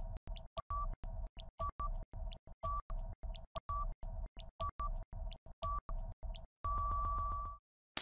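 Quiz countdown timer sound effect: rapid even ticking with a short electronic beep about once a second, ending in one longer beep near the end that signals time is up.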